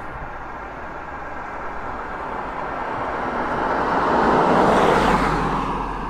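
Road noise from a moving vehicle on a highway: steady tyre and engine noise that swells to its loudest about four to five seconds in, then eases off.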